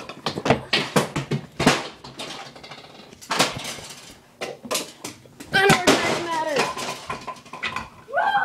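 Pool balls and thrown toys knocking and clacking together on a pool table, a run of sharp hard clicks. A high voice with sliding pitch breaks in about five and a half seconds in.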